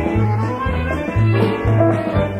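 Square-dance music in a stretch without calling, with a steady bass line changing note about twice a second under the melody.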